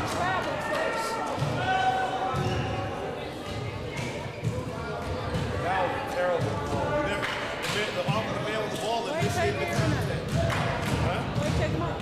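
A basketball bouncing on a hardwood gym floor, with thuds at uneven intervals, among overlapping voices that echo in the gymnasium.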